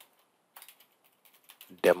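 Typing on a computer keyboard: a click at the start, then a quick run of light keystrokes from about half a second in.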